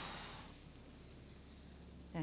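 A breathy exhale that fades out about half a second in, then faint room tone with a low electrical hum.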